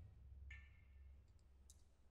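Near silence in a concert hall: a steady low hum, with a short faint ringing ping about half a second in and a few soft clicks.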